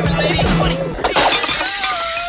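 A light fitting shattering with a burst of breaking glass about a second in, struck by a thrown sai, over music.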